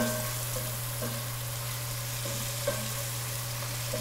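Cubes of boiled deer meat with red onion, ginger and garlic sizzling in hot vegetable oil in a pot, stirred with a silicone spoon that scrapes lightly against the pot a few times. A steady low hum runs underneath.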